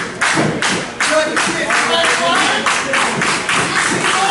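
A small audience clapping in a steady rhythm, about three sharp claps a second, with voices under the claps.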